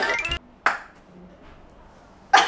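Edited transition sound effect: a short rising pitched sweep, then a single sharp hit about half a second in, followed by quiet room tone.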